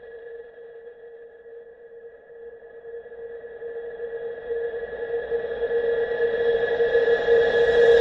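Edited-in intro sound effect under a logo animation: a steady ringing tone over a rushing swell that grows steadily louder, building up towards the opening music.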